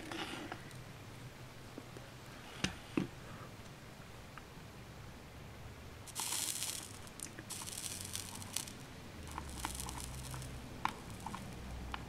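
Soldering iron working a fluxed joint on a wire model truss: quiet crackling hiss as the flux sizzles and the solder flows, coming in spells over the second half, with a few light clicks of the iron and wire earlier on.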